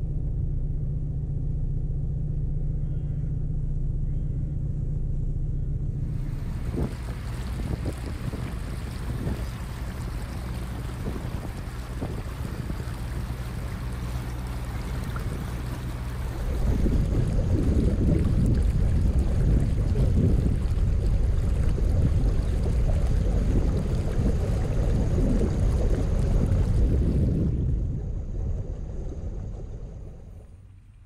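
Narrowboat's diesel engine running steadily while cruising, under-water rush and wind noise. The wind buffeting on the microphone gets much louder about halfway through, then fades near the end.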